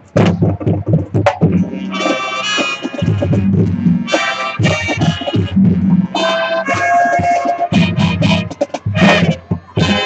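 High school marching band playing a Latin-style show: sharp drumline strokes at first, then brass and woodwinds enter with held chords over the drums from about a second and a half in.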